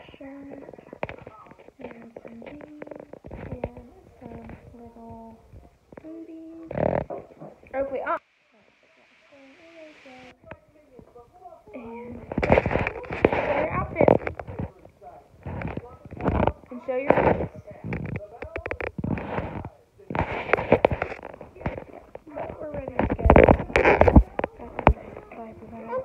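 Indistinct voices, a toddler's among them, with no clear words. From about halfway through, loud rubbing and knocking of a phone being handled against clothing.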